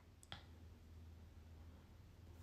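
Near silence over a faint steady low hum, broken by one small sharp click about a third of a second in.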